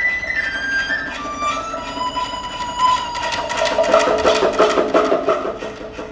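Chinese traditional orchestra playing: a bamboo flute (dizi) melody steps down and holds a long note. From about halfway, a busier passage of rapid repeated notes from the strings joins in.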